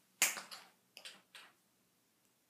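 Metal taps on tap shoes clicking sharply against a hard floor, a handful of clicks in the first second and a half.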